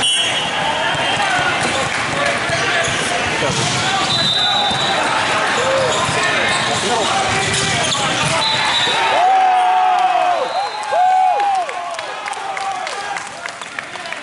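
Indoor volleyball rally in a large, echoing sports hall: the ball being struck, with players calling out and the chatter of spectators and neighbouring courts. The loudest moment is a burst of sharp calls or squeaks a little past the middle, after which things quieten.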